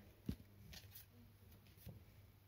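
Near silence with a few faint, short clicks of paper stickers being handled.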